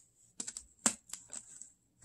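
Half a dozen light clicks and taps, the loudest just before a second in, as fingertips and painted fingernails touch and shift tarot cards spread on a table.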